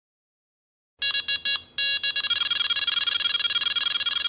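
Electronic carp bite alarm going off: after a second of silence, a few short high beeps, then a continuous fast-warbling tone as the alarm sounds without pause. This is the sign of a fish taking line: a run.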